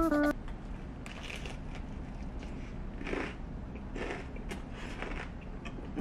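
Close-miked chewing of a bite of crispy fried chicken burger, with a few soft crunches and mouth sounds spread through.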